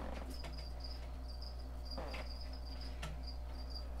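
Faint low hum under a high-pitched chirping that comes in short pulses, about three a second, with a couple of light taps.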